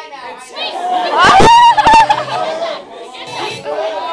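Audience chatter in a large hall, with one voice close by rising loud and high about a second in before falling back to the general talk.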